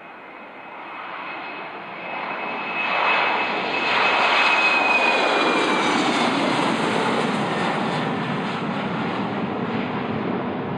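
Embraer E190LR jet's two GE CF34 turbofans at takeoff power, growing louder over the first few seconds as the aircraft lifts off close by. A high engine whine runs over the noise and drops slightly in pitch as the jet passes, then the sound eases off a little as it climbs away.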